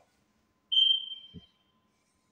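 A single high-pitched beep that starts suddenly and fades out over about a second, with a brief soft low thump partway through.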